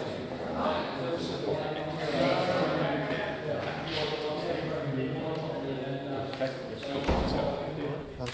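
Men's conversation, mostly indistinct, in a large echoing hall, with a dull low thump about seven seconds in.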